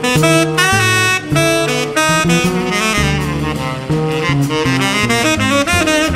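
A jazz trio playing live: a tenor saxophone carries a line of quickly changing notes over double bass and drums, with cymbals ticking throughout.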